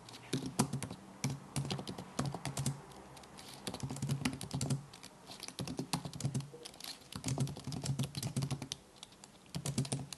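Typing on a computer keyboard: quick runs of keystroke clicks in bursts, with short pauses between them.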